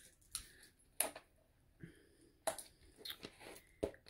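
Handling sounds from a set of small stacking containers that won't come apart: a few sharp clicks and taps spread through the moment, with light rustling in between.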